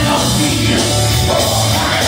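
Live gospel band music played loud through the church sound system, dense and continuous with a steady driving beat.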